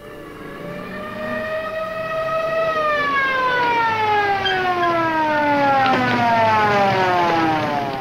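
A mechanical police car siren grows louder and rises slightly in pitch over the first few seconds. Then it winds down in a long, steady falling glide as the car comes to a stop.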